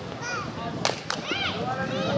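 Voices calling out around a kabaddi court during a raid, with two sharp slap-like cracks a quarter-second apart about a second in.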